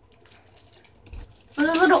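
Quiet room tone with one soft low bump about a second in, then a child's voice starts speaking near the end.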